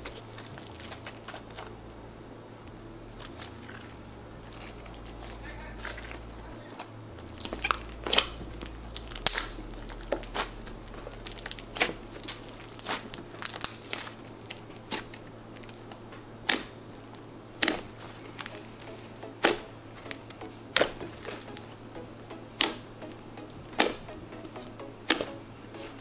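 Stiff fluffy slime being kneaded and squeezed by hand, giving sharp sticky pops and crackles. It is faint for the first several seconds; then the pops start, the loudest about nine seconds in, and settle to about one every second or so.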